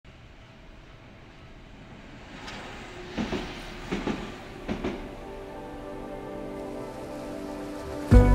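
A train passing, its wheels clacking over a rail joint in three double clacks less than a second apart over a low rumble. Music fades in during the second half.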